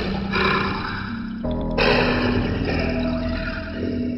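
A heavily effects-processed character voice, too distorted for the words to be picked out, speaking in two phrases with a short break about a second and a half in, over a steady background music drone.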